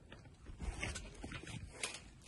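Quiet shuffling on a trampoline mat as a person gets up from lying down and stands, with a soft low thump about two-thirds of a second in and a few light clicks.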